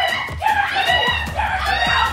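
Several people screaming and shrieking at once in a scuffle, a string of short, high-pitched, overlapping cries with no clear words.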